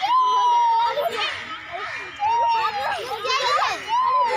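A metal swing squeaking as it rocks: a steady high squeal under a second long, recurring about every two seconds, with children's voices and laughter between the squeals.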